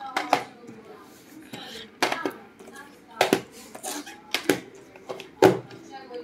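Plastic DVD cases being handled and set down on a cloth-covered table: a series of sharp clicks and knocks as the cases tap against each other and the table.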